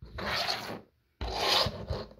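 Handling noise: two rubbing scrapes against a textured table mat, each under a second long.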